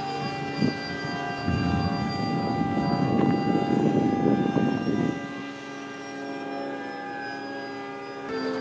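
Model Icon A5 airplane's motor and propeller running in flight: a steady, many-toned hum whose pitch slowly drifts as it flies. A rough rushing noise sits under it through the first five seconds, then drops away.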